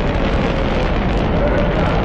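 Saturn V rocket's five F-1 first-stage engines at liftoff: a loud, steady, deep rumble with crackle, in archival launch audio.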